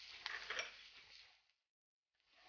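Wooden spatula stirring and scraping onions and spice powder in a nonstick frying pan, faint, with a couple of light knocks against the pan in the first second.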